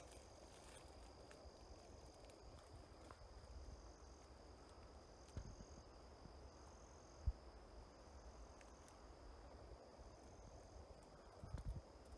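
Near silence: faint outdoor ambience with a thin steady high tone and a low rumble, and one short soft knock about seven seconds in.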